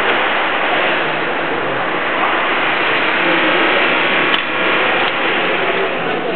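Self-service train ticket machine printing and dispensing a ticket: a mechanical whir that ends in one sharp click a little past the middle, over steady background hubbub.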